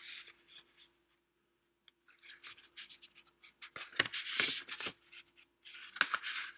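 Stiff paper lithograph prints being handled and shuffled: card sliding and rubbing against card in a few bursts of rustling with light clicks, after a quiet first two seconds, loudest about four seconds in.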